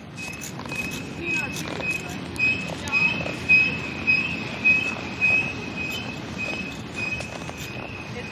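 Freight train passing: a low rumble with a high squeal that pulses about twice a second.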